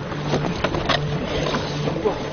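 Splashing in shallow water as a person wades and snatches a paddle, a run of short, irregular splashes over a steady low hum.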